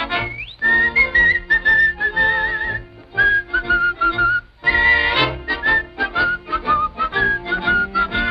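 A lively tune whistled in short phrases with a wavering vibrato, over a light orchestral cartoon score; the whistling breaks off briefly twice, about three seconds in and again just before the five-second mark.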